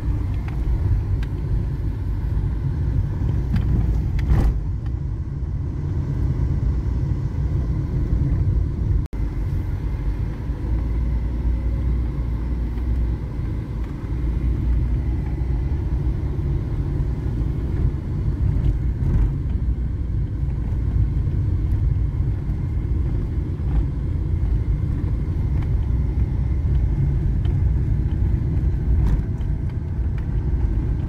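Car cabin noise while driving on a rough unpaved gravel road: a steady low rumble of engine and tyres, with a few short knocks from bumps in the road.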